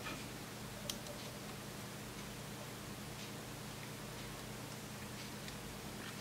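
Steady low hum of a quiet room, with one small sharp click about a second in and a few fainter ticks as diagonal side cutters nip into the hard over-moulded plastic of a Lightning cable's plug.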